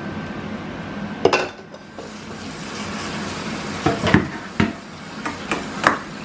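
Canned chickpeas being drained and rinsed in a metal colander over a stainless-steel sink: a steady trickle of liquid with several sharp metallic clanks as the colander and can knock against the sink.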